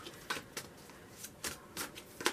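Tarot deck being shuffled by hand: a handful of short, soft slaps as packets of cards are dropped onto the deck, irregularly spaced a few tenths of a second apart.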